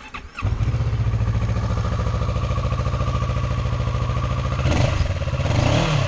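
A 2015 Kawasaki Versys 650's parallel-twin engine started from stone cold after sitting a while: it catches at once, about half a second in, and settles into a steady, even idle, running clean.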